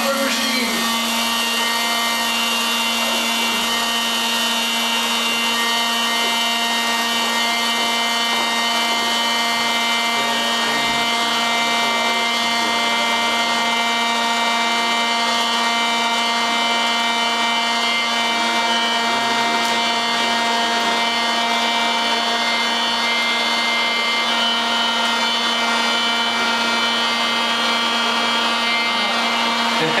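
Popcorn vending machine running while it makes a batch of popcorn: a loud, unchanging electric drone, a low hum with several high whining notes above it.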